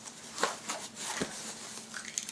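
A cardboard package being handled while a box cutter is set against its packing tape: a few soft knocks, taps and scratches of blade and hands on cardboard.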